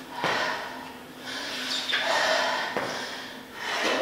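A woman breathing hard during walking lunges: several long, airy breaths in and out, picked up close on the microphone.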